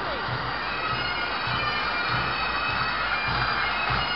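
Pipe band playing: bagpipes sounding steady held tones over a bass drum beating about twice a second.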